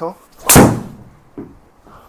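A driver's clubhead striking a teed golf ball: one loud, sharp crack about half a second in, ringing off briefly. A much fainter knock follows about a second later.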